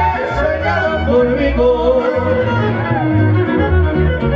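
Live band music amplified through a PA: a fiddle carries the melody over guitar and a steady bass line.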